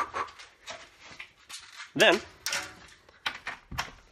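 A man breathing hard after a short run, with scuffs and rustles as he pulls on his shoes, and handling noise from the phone.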